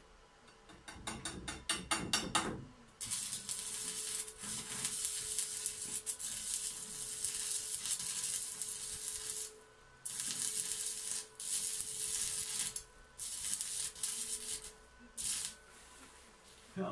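Stick-welding arc from a small 80 A inverter burning a 2.5 mm stainless-steel electrode into a side seam on 2 mm stainless square tube. It starts with a stuttering run of crackles before the arc settles into a steady sizzling hiss, which breaks off briefly a few times near the end.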